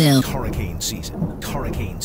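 Thunderstorm sound effect: rumbling thunder and rain with several sharp cracks. A pitched, electronically warped voice cuts off just at the start.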